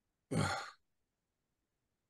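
A man's single short sigh, a breathy exhale lasting about half a second, heard close on a microphone over a video call. It comes about a third of a second in, and there is dead silence on either side.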